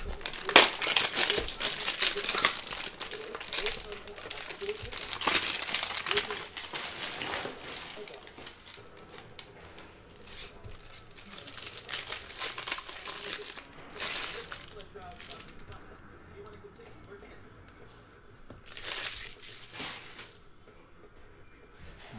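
Card packs from a Panini Prizm hanger box being torn open and their wrappers crinkled. The crinkling is loudest and most continuous for the first several seconds, then comes in softer, scattered bursts.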